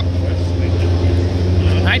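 Steady low hum of a large indoor hall, with faint distant voices.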